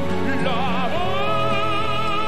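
Operatic tenor singing in Italian with strong vibrato over instrumental accompaniment: a short run of moving notes in the first second, then a long held note.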